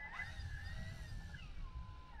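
Faint, thin whine of the Extreme Flight 120-inch Bushmaster model airplane's engine at low throttle on the ground after landing. Its pitch wavers, then falls steadily through the second half as the throttle comes back, over a low rumble.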